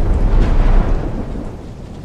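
Loud, dense rumbling noise with no clear beat or melody, part of the recorded audio of a rap music mix between songs; it fades over the second half.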